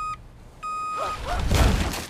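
Two steady electronic beeps, each about half a second long, like a vehicle's reversing warning, followed by a loud rushing sound with a deep rumble in the last second.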